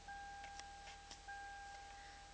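Faint, steady electronic warning tone from a 2012 Toyota Highlander's dashboard, held for about a second at a time with brief breaks between, and a few faint clicks.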